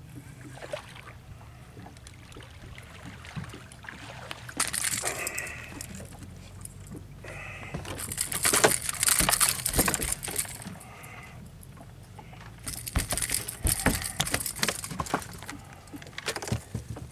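A hooked fish splashing as it is brought to the boat, then flopping and knocking on the boat's deck, in three loud noisy spells with sharp knocks; the loudest is a little past the middle.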